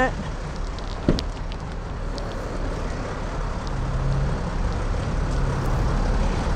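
Mercedes-Benz Sprinter van's driver door latch clicking open about a second in, over a steady background of vehicle and traffic noise. A low steady hum joins from about two-thirds of the way through.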